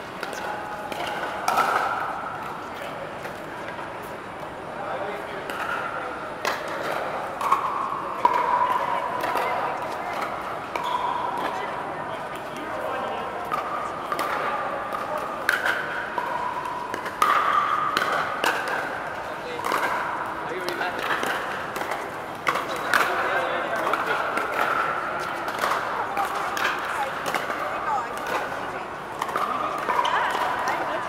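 Pickleball paddles hitting plastic balls on many courts at once: sharp, irregular pops that echo under a large air-supported dome. A steady murmur of many players' voices runs underneath.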